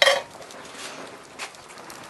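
A sharp metallic clank as a small metal pot on long-handled tongs is lifted off the table, fading quickly, followed by a couple of faint clicks of the metal rattling.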